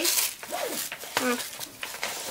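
Packaging wrapper rustling as it is pulled out of an insulated cooler bag, loudest right at the start, with a woman's brief spoken word.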